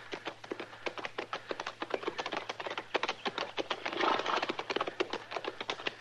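Radio-drama sound effect of horses' hoofbeats, a steady run of many quick clip-clops as two riders approach over ground. A brief louder, rougher sound comes about four seconds in.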